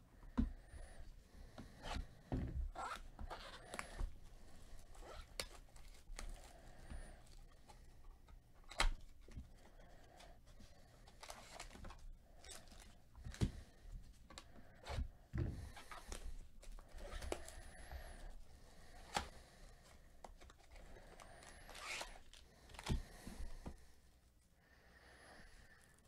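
Gloved hands opening cardboard trading-card boxes and handling the foil-wrapped packs inside. Faint, irregular tearing, scraping and rustling with occasional light knocks.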